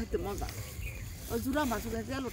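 Quiet talking, in short phrases, over a steady low background rumble.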